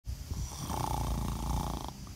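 A low, rattling snore-like sound that stops just before the talking begins.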